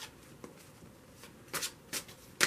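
A deck of tarot cards being shuffled by hand, overhand, one packet dropped onto the other: a few light card clicks, then two louder slaps of cards from about one and a half seconds in.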